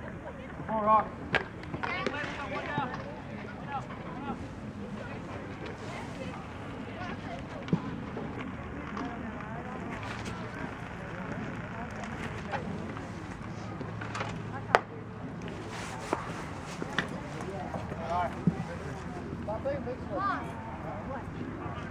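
Scattered voices calling out over a steady outdoor background at a baseball game. About 15 seconds in comes a single sharp crack, the loudest sound: a pitched baseball striking. A smaller crack comes about 8 seconds in.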